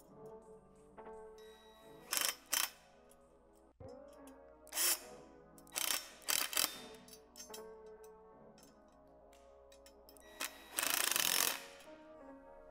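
Power drill driving bolts into a metal bench frame in several short whirring bursts, the longest, about a second, near the end, over steady background music.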